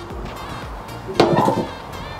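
Aluminium checker-plate loading ramp of a mobile roller brake tester being let down onto the steel frame, landing with one sharp metallic clank and brief ringing a little over a second in.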